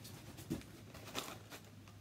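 Faint rustling and crinkling of aluminium foil and a dried tissue-paper-and-glue mask shell being handled, a few soft rustles about half a second in and again a little after one second.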